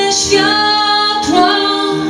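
A woman singing a Polish song with her own piano accompaniment, holding long notes and sliding up into each new one.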